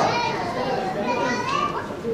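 A group of children's voices talking over one another, calling out answers to a quiz question.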